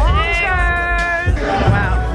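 Hip-hop music with a steady bass, in which a high vocal note slides up and holds for about a second before breaking into shorter wavering vocal phrases.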